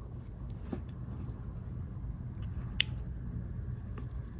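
Soft brush strokes on xuan paper, a loaded Chinese painting brush pressing out petals, over a low steady hum, with one sharp click about three-quarters of the way through.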